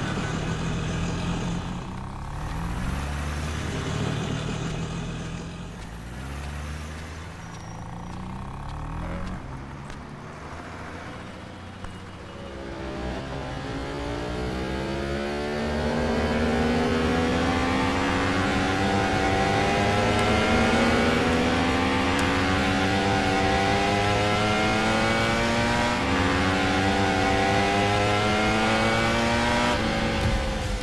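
Street traffic with engines running. From about a third of the way in, a sport motorcycle's engine accelerates hard, its pitch climbing again and again as it works up through the gears, growing louder.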